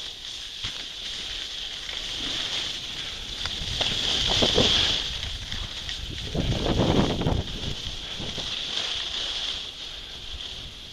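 Skis sliding over groomed snow at speed, a steady scraping hiss, with air rushing over the microphone. The sound swells louder twice, about four and about seven seconds in.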